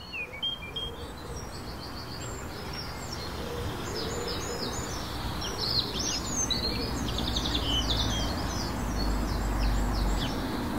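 A chorus of birds chirping and singing, many short overlapping calls and trills, over a steady low ambient rumble that swells near the end. The whole grows gradually louder over the first few seconds.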